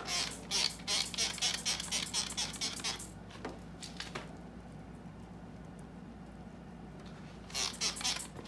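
Clay bar rubbed back and forth over wet car paint in quick strokes, a scratchy rubbing for about three seconds as it lifts bonded contaminants, then a couple of separate rubs. Near the end, short squirts from a trigger spray bottle wet the panel.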